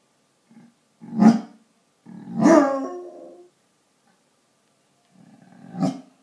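Basset hound howling in separate calls because its owner has gone out: a short call about a second in, a longer one a second later that falls in pitch, and another near the end.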